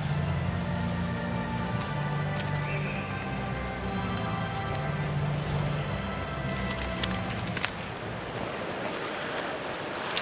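Arena music over the PA, long held notes above steady crowd noise, fading out about eight seconds in. A few sharp stick-on-ice clacks come at about seven seconds as the face-off is taken.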